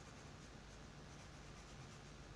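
Near silence: faint sound of a soft graphite pencil drawing on paper, over a low steady hum.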